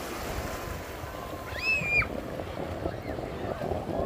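Seaside ambience of wind and surf with distant voices. About halfway through there is one short, high-pitched call that rises, holds briefly and drops.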